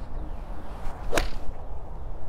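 A 1988 Wilson Staff Goose Neck forged blade iron swung and striking a golf ball off a hitting mat: one sharp, crisp click about a second in, a well-struck shot.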